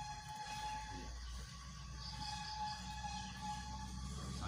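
Room background with no speech: a steady low hum and a thin steady tone that drops out for about a second in the middle. About two seconds in come four faint high chirps.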